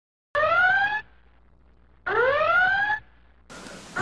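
Whooping alarm sound effect: two loud electronic whoops, each rising in pitch and lasting under a second, about 1.7 s apart.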